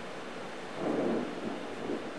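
Steady rain, with a rumble of thunder swelling up a little under a second in and fading off over about half a second.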